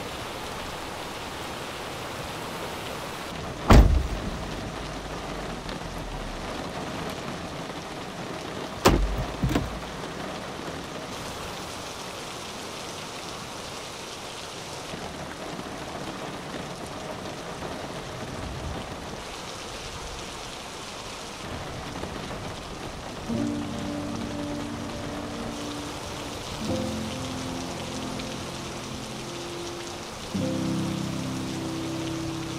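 Steady heavy rain, with two loud thunder cracks about four and nine seconds in, each trailing off in a short low rumble. Soft music comes in over the rain for the last several seconds.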